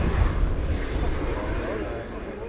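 Twin F404 turbofans of an F/A-18C Hornet running at low power as the jet rolls out on the runway after landing: a steady low rumble that slowly fades. A public-address commentator's voice is faintly heard over it.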